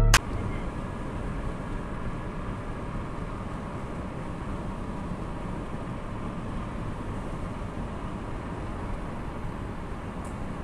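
Steady road and tyre noise inside a car's cabin at highway speed, picked up by a dashcam microphone; electronic music cuts off right at the start.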